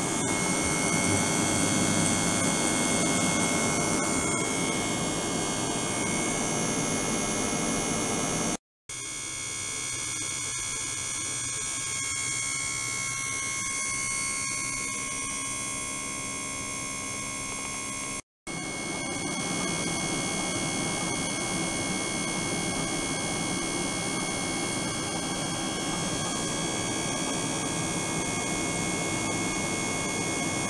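A steady machine hum with several steady high tones over a noisy wash, from a water tank driven by ultrasonic equipment with a liquid-circulation pump. It drops out twice for a moment, about a third and about two thirds of the way in, and is quieter and thinner between the two drops.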